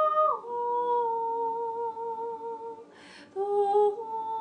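A high voice humming long, wordless held notes in light-language chant. It slides down in pitch just after the start, holds a steady note, then takes a quick breath about three seconds in before starting a lower note.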